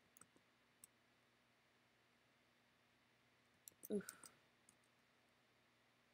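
Faint clicks over a near-silent room: a few small clicks at the start, then a louder quick cluster of clicks about four seconds in, as the brush is worked on the canvas.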